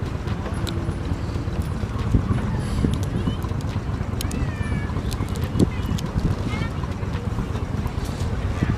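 Wind rumbling on the microphone outdoors, with faint voices and chatter in the background and a few scattered clicks.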